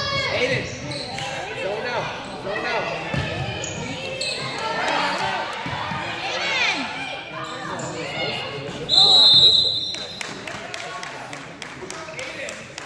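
Youth basketball game in an echoing gym: basketballs bouncing on the hardwood, sneakers squeaking and distant voices. About three-quarters of the way through, a referee's whistle sounds loudly for about a second, followed by a ball bouncing at an even pace.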